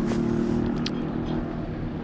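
A nearby engine running steadily at one constant pitch: a low, even hum with several held tones and no revving.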